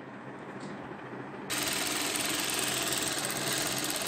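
Industrial sewing machine stitching a seam in tulle. It starts suddenly about a second and a half in and runs steadily at high speed.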